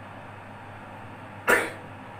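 A young girl sneezing once: a single short, sharp burst about a second and a half in.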